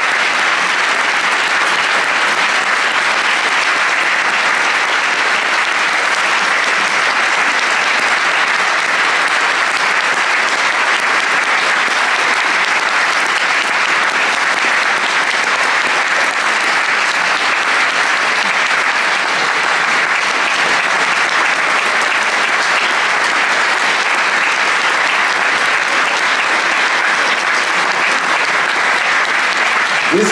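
Audience applauding, a dense, steady clapping that holds at one level without letting up.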